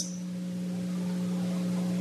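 A steady low hum with several fainter steady overtones above it, unchanging throughout: electrical hum in the recording of the talk.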